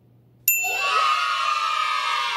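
About half a second in, a bright bell ding sounds, and a steady cheer of many children's voices starts with it and carries on: a correct-answer sound effect.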